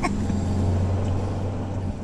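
Steady low engine and road drone of a VW Beetle cruising at highway speed, heard inside the cabin; the hum cuts off near the end.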